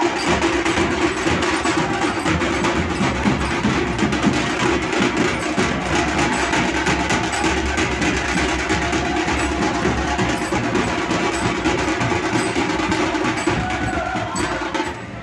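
A group of large double-headed dhol drums beaten in a fast, continuous rhythm, with sharp strikes.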